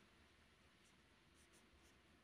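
Near silence, with only the faint scratch of a felt-tip marker writing characters on paper.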